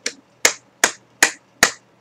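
Fingers snapping in a steady rhythm, five snaps about two and a half a second.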